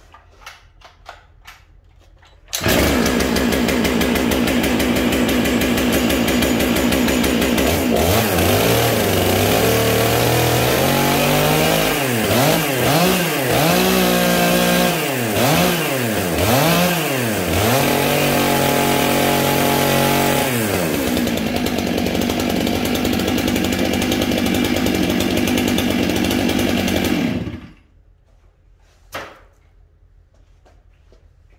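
Stihl MS 661 C two-stroke chainsaw starting, idling, then revved with several quick throttle blips and a short steady run at higher speed. It drops back to idle and is switched off. It is being run to check bar oil flow after the oiler was turned up.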